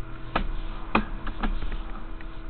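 A sewer inspection camera rig with its push cable being fed down the line: a few irregular sharp clicks and knocks over a steady electrical hum.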